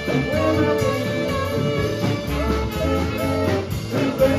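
Live blues band playing: an electric guitar stands out over electric bass and drums.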